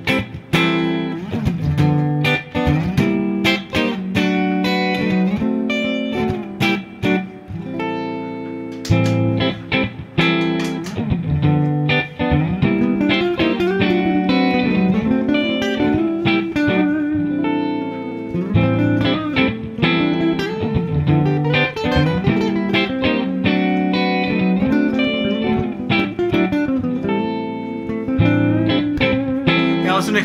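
Ibanez electric guitar playing quick improvised melodic phrases over a looped chord accompaniment recorded on a looper pedal.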